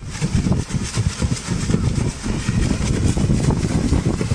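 A large tuna thrashing at the surface of shallow water, throwing up heavy, continuous splashing with a rough, rumbling churn.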